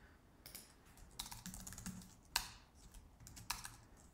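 Quiet typing on a computer keyboard: a few scattered keystrokes, irregularly spaced, the loudest about two and a half seconds in.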